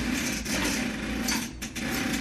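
Small electric motor of a motorized window roller shade running steadily as it raises the shade.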